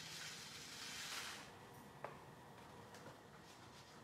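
Sequins poured from a small plastic jar into a paper shaker-card frame: a faint rustling patter for about a second and a half, then one light tick about two seconds in.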